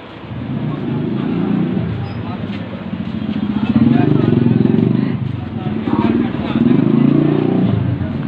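A motorcycle engine running close by, its low pulsing sound swelling twice, around the middle and again near the end, with voices faintly underneath.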